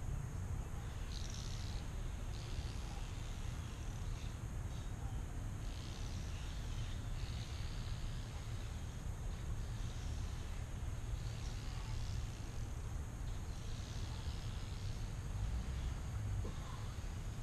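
Low, uneven rumble of wind on the microphone in the open air, steady throughout, with faint hissing higher up.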